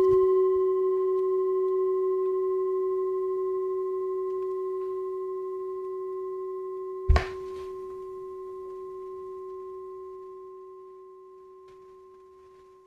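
A bell-like chime rings out, is struck again about seven seconds in, and fades slowly, one clear tone with a few higher overtones.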